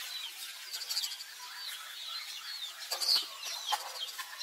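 Birds chirping in the background, many short rising and falling calls in quick succession, with a single sharp knock about three seconds in.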